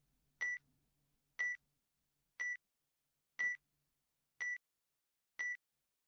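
Countdown-timer beep sound effect: a short, high electronic beep once every second, six in all.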